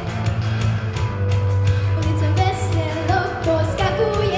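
A girl singing a rock-and-roll pop song into a microphone over a backing track with a steady bass line and drums. Her voice drops out for the first couple of seconds while the backing carries on, then comes back in about halfway through.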